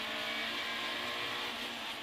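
Peugeot 106 rally car's engine running at a steady pitch, heard from inside the cabin over road and tyre noise.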